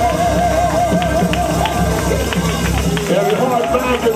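Church praise band with women singing: a voice holds a long note with wide vibrato over keyboard and drums, then starts a new phrase near the end as the low bass drops away.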